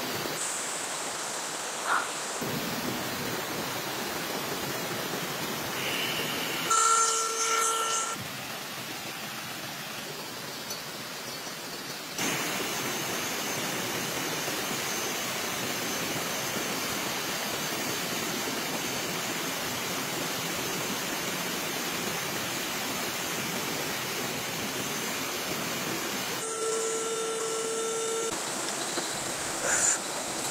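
Steady rushing of a shallow rocky stream, its level shifting at a few points, with a click about two seconds in and a short held tone about seven seconds in and again near the end.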